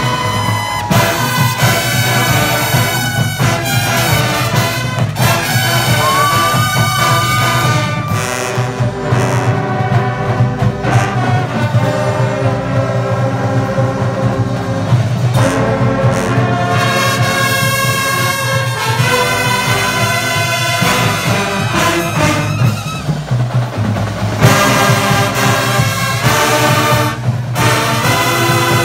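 A drum and bugle corps playing live: massed brass bugles sound loud, full chords that are held and shift every few seconds.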